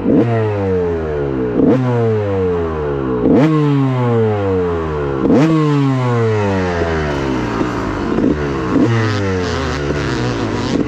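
2006 Honda CR250R's two-stroke single-cylinder engine being ridden hard on a motocross track. It revs up sharply every second or two, and the pitch falls away between each burst of throttle.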